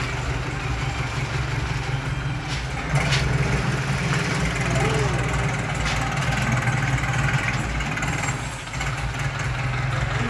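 Thai long-tail boat engine idling steadily, growing louder about three seconds in.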